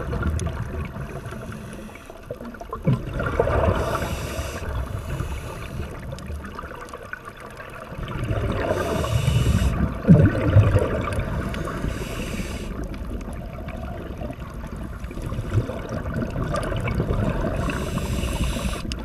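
Scuba breathing heard underwater: regulator hiss on the inhale and gurgling rushes of exhaled bubbles, swelling and fading every few seconds.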